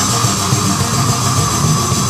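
Heavy metal band playing live: loud electric guitars and bass in a dense, held chord or riff that fills the whole stretch.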